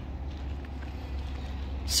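Steady low rumble of outdoor background noise, with no distinct event.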